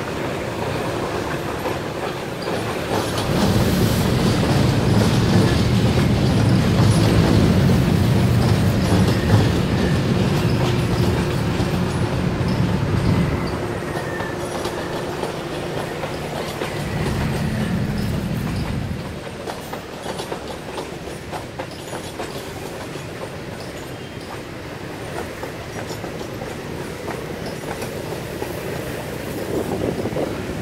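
A double-headed diesel freight train passes: two diesel locomotives, then a short train of cargo vans. The locomotives' engines make a loud low rumble from about 3 to 13 seconds in, with a further short surge a few seconds later. After that the vans roll by more quietly, their wheels clicking over the rail joints.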